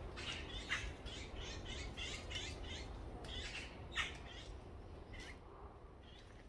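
Wild birds calling in the woods: a quick run of chirping notes, about four a second, for the first three seconds, then a few separate sharper calls. A low steady rumble lies underneath.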